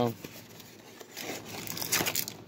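Cardboard and plastic wrapping crinkling and rustling as a hanger box of trading cards is opened and the plastic-wrapped card stack is worked out, growing louder near the end.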